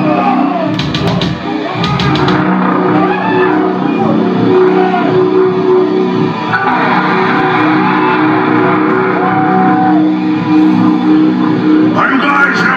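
Distorted electric guitar through the amplifiers holding a steady, droning sustained chord, with a few quick drum or cymbal hits between about one and two seconds in.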